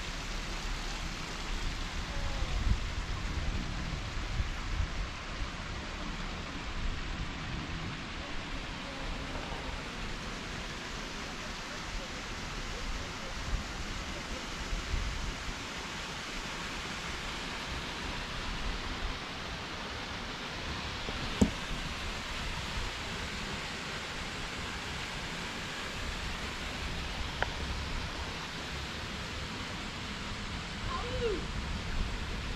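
A mountain stream flowing below, heard as a steady hiss of running water, with wind buffeting the microphone in uneven low rumbles. A single sharp knock about two-thirds of the way through.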